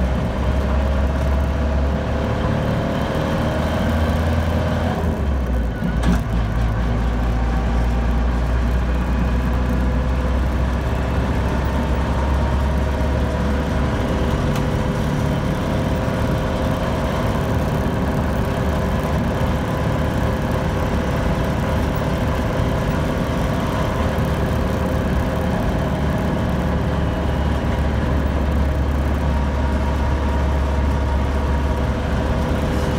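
1975 Land Rover Series III 109's 2.25-litre three-bearing diesel engine and drivetrain heard from inside the cab while driving. The engine note rises, breaks off briefly about five seconds in at a gear change, then holds steady at cruising speed.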